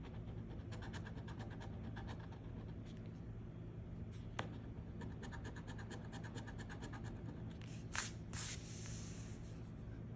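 A coin scraping the coating off a scratch-off lottery ticket in a quick run of short strokes, followed near the end by two louder scrapes.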